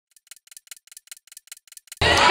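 Clock-ticking sound effect: quiet, rapid, evenly spaced ticks, several a second, like a countdown timer.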